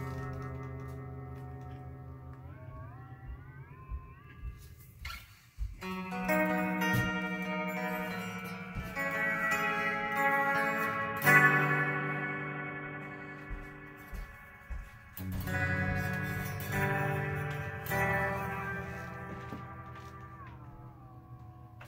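Electric guitar played through a spring reverb and modulation pedal: a held chord whose notes bend upward, then a few strummed chords that ring out with reverb, the one near the middle the loudest.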